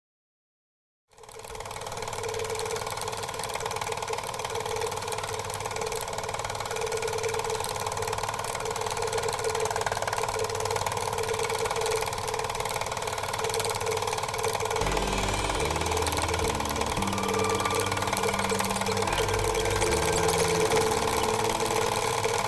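About a second of silence, then a loud, dense, steady noise drone starts abruptly, part of an abstract experimental-film soundtrack. About 15 seconds in, low tones that step up and down in pitch join underneath.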